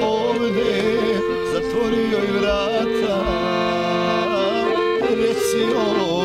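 Accordion playing a folk tune, a melody over sustained chords that change every second or so.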